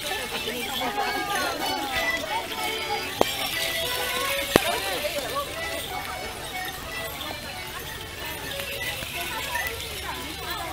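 A group playing a tune on small hand-held wind instruments while walking, mixed with voices and chatter. Two sharp clicks stand out, about three and four and a half seconds in.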